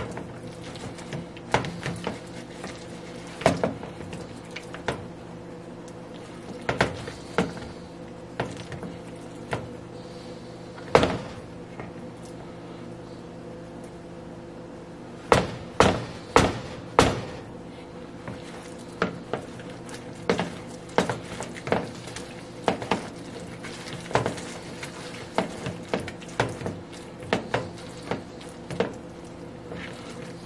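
Silicone spatula stirring and mashing a thick mixture in a mixing bowl: irregular soft knocks and taps against the bowl, with a quick run of louder knocks about fifteen seconds in, over a steady low hum.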